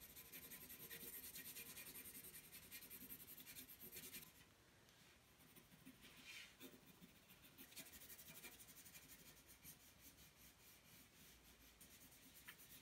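Faint scratching of a graphite pencil shading on paper in quick repeated strokes for about four seconds, then fainter, with a few scattered strokes later on.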